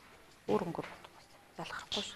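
Short snatches of talking voices in a classroom, one about half a second in and another near the end, with quiet room noise between.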